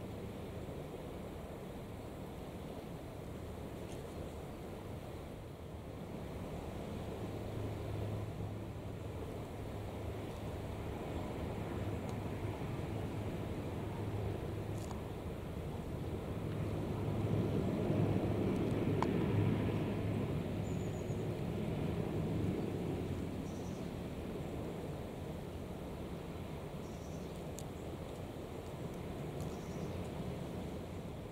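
Distant marine diesel engines of an RNLI Severn-class lifeboat and a beam trawler running in at speed: a low, steady drone. It grows louder just past halfway and then eases off again.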